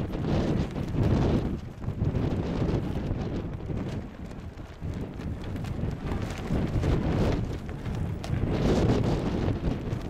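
Wind buffeting the camera microphone: a low rumble that rises and falls in irregular gusts.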